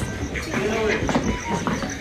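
Indistinct voices of several people talking, with a few footsteps on a hard floor.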